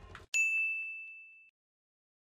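A single bright ding sound effect: one clear, high, bell-like tone that strikes sharply about a third of a second in and fades away over about a second. It is an edited-in cue marking the on-screen pause counter going up by one.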